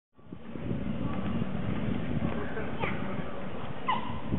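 City street ambience fading in: a steady hum with indistinct voices and a few short chirps.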